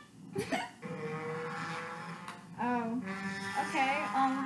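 Music playing from a television speaker: a quick swoosh, then a long held note, then a voice singing over it.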